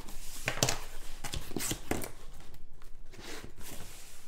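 A taped cardboard shipping case being torn open by hand: a run of irregular tearing, rustling and scraping of cardboard and tape, with a few sharp knocks as the boxes inside are handled.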